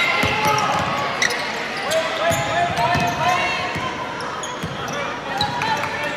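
Basketball dribbled on a hardwood gym floor, a dull thump every half second or so, with sneakers squeaking and a steady chatter of crowd and player voices echoing around the gymnasium.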